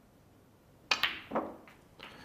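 Snooker cue tip striking the cue ball with a sharp click about a second in, and the cue ball knocking into the black almost at once, followed by two smaller ball knocks over the next second. The shot was not hit well at all, a twitch on the cue, though the black still drops.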